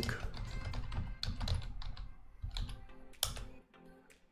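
Computer keyboard typing: a run of keystrokes in small clusters, with one harder stroke near the end, over soft background music.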